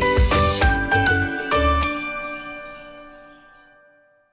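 Upbeat TV programme intro jingle with bass beats and bright chiming notes, ending about two seconds in on a held chord that fades out.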